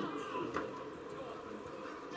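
Faint background voices of people talking at a distance, with no other distinct sound standing out.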